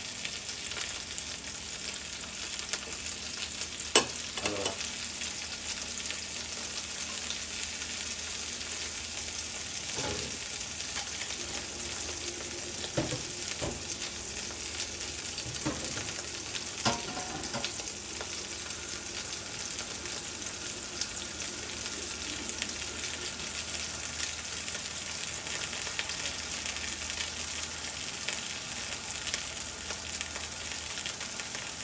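Whole prawns sizzling in a hot cast-iron grill pan: a steady frying hiss. A few short sharp clicks and knocks break through it, the loudest about four seconds in.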